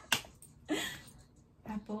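A single sharp click just after the start, then a short breathy hiss, and a woman's voice starting near the end.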